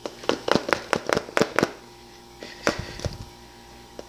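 Frozen banana chunks knocking inside a NutriBullet cup as it is shaken by hand: a fast run of about eight sharp knocks in the first second and a half, then a few scattered knocks. The bananas are frozen too hard to blend, and the shaking loosens the chunks from the blade.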